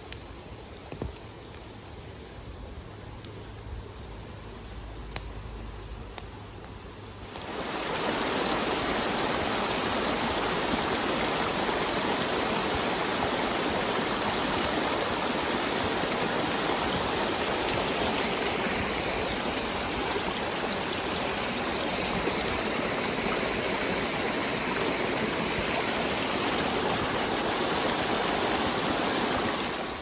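A wood campfire crackling quietly, with a few sharp pops. About seven seconds in, it cuts abruptly to the louder steady rush of a spring-fed creek spilling over small cascades, which runs on from there.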